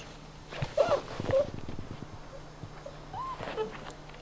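Six-week-old Brittany puppies giving a few short, high whines while they play, about a second in and again past three seconds, with light rustling on the grass.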